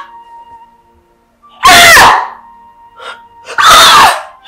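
A woman wailing in anguish, two loud cries with pitch sliding up and down, about one and a half and three and a half seconds in, over soft sustained background music.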